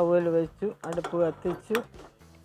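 A woman talking in short phrases, with one sharp click near the end.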